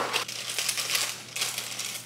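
Cardboard box of yellow cake mix torn open and its inner plastic bag pulled out and pulled apart, crinkling in irregular crackles, with a sharp snap right at the start.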